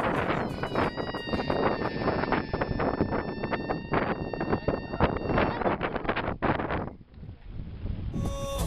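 Wind buffeting the microphone, with a steady high squeal from about one second to about five and a half seconds in: air let out through the stretched neck of a rubber balloon.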